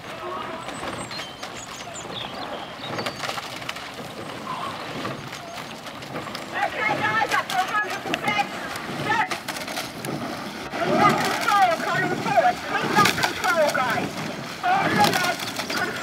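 Indistinct raised voices calling out, fainter at first and louder from about two-thirds of the way in, with a few sharp knocks among them as a rowing eight passes close by.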